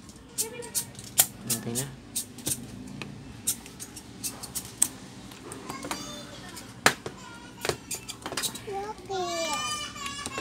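Irregular sharp clicks and taps from hands handling a portable Bluetooth speaker's circuit board, wires and battery connector, the loudest a single click about seven seconds in. Children's voices can be heard in the background now and then.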